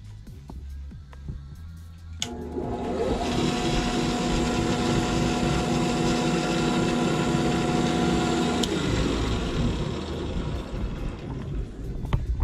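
Benchtop drill press switched on about two seconds in, running with a steady hum for about six and a half seconds, then switched off and spinning down. It is running on power from a 2000 W, 12 V pure sine wave inverter.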